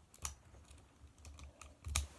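Plastic clicks and light knocks from the ratcheting joints and parts of a Transformers Jazz action figure being handled and transformed: a few scattered sharp clicks, the loudest near the end.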